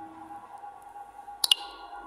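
Two quick clicks close together about one and a half seconds in, with a brief ringing tail: the Infinix Hot 12 4G's screen-lock sound as the display turns off. A faint steady tone runs underneath.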